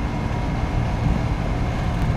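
Wind blowing across the microphone outdoors: a steady rush of noise with uneven low buffeting.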